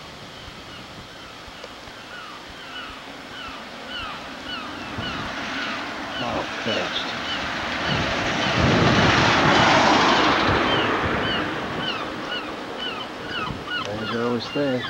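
A bird chirping over and over, about two short calls a second. Partway through, a broad rushing noise swells up, peaks around nine to ten seconds in, and fades again.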